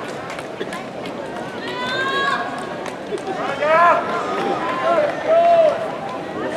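Voices shouting over crowd noise in an arena: several loud, high-pitched calls that rise and fall in pitch, strongest a couple of seconds in and again near the end.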